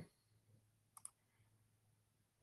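A single computer mouse click, a quick double tick about a second in, against near silence.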